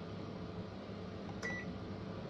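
A single short electronic beep from an oven's control panel, with a click just before it, about one and a half seconds in, over a steady low hum.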